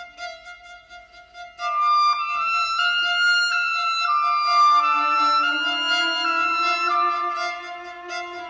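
Contemporary classical chamber music: violin and clarinets playing long held notes that move in slow steps. It starts soft, with a louder entry about a second and a half in and a lower held note joining about halfway through.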